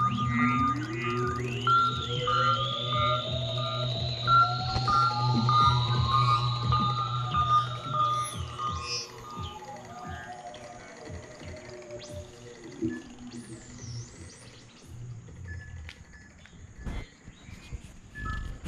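Novation MiniNova synthesizer sounding a low sustained drone, with a slow pitch glide rising and then falling, a wavering high tone and a pulsing note above it. The sound fades away over the second half.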